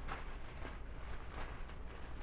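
Faint handling noises at a table: a few soft taps and light rustling from food being mixed and handled, over a steady low hum.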